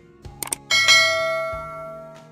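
A bell-like chime in the background music, struck about two-thirds of a second in after two quick clicks, then ringing out and fading over about a second and a half.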